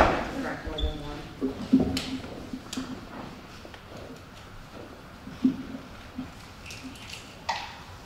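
A metal spoon taps a hen's eggshell once, sharply, to crack it. A few fainter clicks follow as the cracked shell is pried apart by hand.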